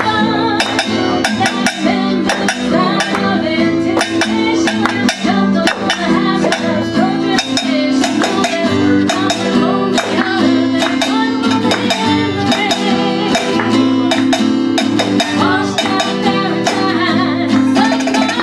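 Live acoustic music: a guitar strummed in a steady rhythm, with a voice singing over it.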